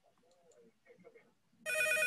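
A recorded electronic telephone ring, a warbling trill, starts suddenly near the end.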